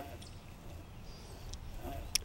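Quiet outdoor background: a steady low rumble with no distinct event; the practice stroke of the putter makes no audible strike.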